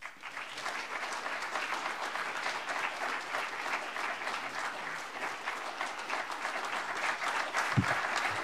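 Audience applauding steadily, a dense, even patter of many hands clapping.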